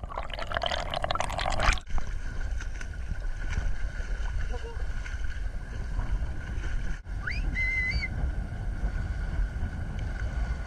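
Water sloshing and gurgling around a waterproof camera housing. The first couple of seconds are a loud hissing wash while the camera is underwater. It then gives way to a steady low rumble of water lapping at the lens at the surface. About seven seconds in there is a short high-pitched call that rises and then holds for under a second.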